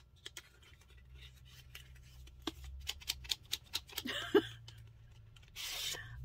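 Packaging being handled as a crochet hook is unwrapped: scattered small clicks and rubbing, with a short scrape about four seconds in and a brief rustle near the end.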